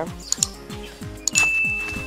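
Background music with a steady beat of about four low thumps a second. Over it come two short mouse-click sound effects, about a third of a second and just over a second in, the second followed by a steady high ding held for about a second: the sound effect of an on-screen subscribe-button animation.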